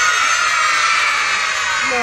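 A crowd of young children shouting together in unison, one long held call of many high voices that drops in pitch as it fades out at the end.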